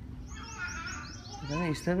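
A small bird chirping: a quick run of about ten short, high chirps, each sliding down in pitch, over roughly a second. A voice follows near the end.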